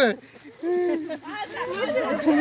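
Several people's voices calling out and talking over one another, with a short lull about half a second in.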